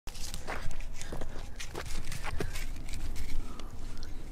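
Irregular sharp crackles and crunching steps, with a few short squeaks, as someone moves at the shallow edge of a lake and works a reed stem in the water around a fish.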